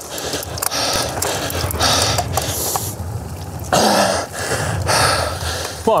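A cyclist breathing hard in irregular gasps during a flat-out effort on a gravel bike, over a low rumble of wind and tyre noise on a gravel track.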